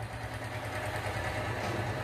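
A steady low mechanical hum, like a motor or engine running, with no change in pitch or level.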